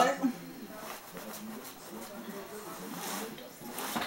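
A woman clearing her throat, loud and short, right at the start, followed by quiet talk and murmuring voices.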